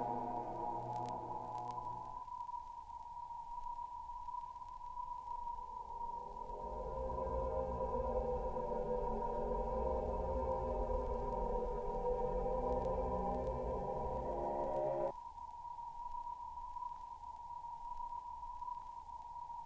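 Dark ambient music built on a single steady, high, sine-like tone held throughout. An earlier layer drops out about two seconds in. A murky, swelling wash of deeper sound rises from about six seconds in and cuts off suddenly near fifteen seconds, leaving the lone tone.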